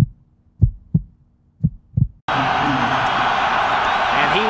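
Heartbeat sound effect: pairs of low thumps, about one pair a second, three times. A little over two seconds in it cuts suddenly to loud stadium crowd noise from a football broadcast.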